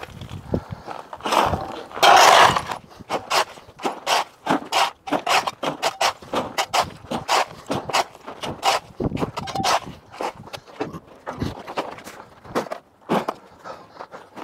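A steel shovel scraping over a concrete base and scooping broken tile and screed rubble, with one long scrape about two seconds in. Many quick clinks and clatters follow as the chunks are tipped into plastic buckets.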